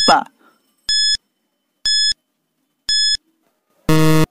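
Quiz countdown-timer sound effect: three short, identical high beeps about a second apart, ticking off the final seconds. A louder, lower buzz starts right at the end as the timer reaches zero.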